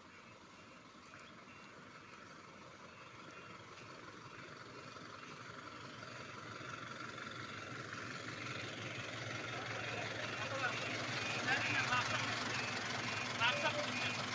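Diesel engine of an Eicher water-tanker truck growing steadily louder as the truck approaches, running close by near the end.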